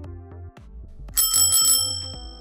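A handlebar-mounted bicycle bell is rung with its thumb lever about a second in: a bright, rapidly pulsing ring lasting under a second, whose tones ring on and fade. Background music with a steady beat plays throughout.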